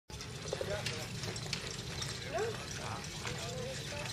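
Faint, indistinct voices talking, over a steady low rumble of outdoor background noise, with a few faint clicks.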